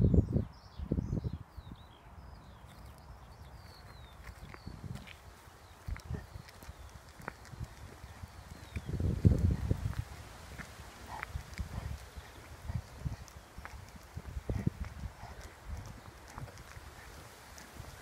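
Footsteps of a person walking along a lane, with irregular low rumbles on the microphone, loudest right at the start and about nine seconds in. Faint birdsong chirps in the first few seconds.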